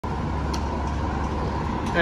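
Steady low rumble of an idling diesel fire engine, a 2021 Seagrave pumper, with a faint steady high tone over it.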